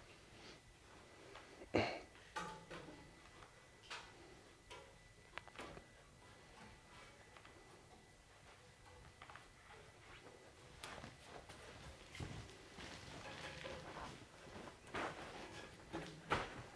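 Faint, scattered knocks and clicks of an obstacle's gymnastic rings and steel hanging bars being gripped and swung on, with one louder thump about two seconds in.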